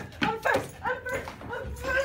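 A woman giving high-pitched wordless yelps and whimpering cries that slide up and down, with a few sharp knocks mixed in.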